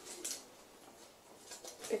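Faint rustling of a cotton sweatshirt being unfolded and handled, in short soft bursts.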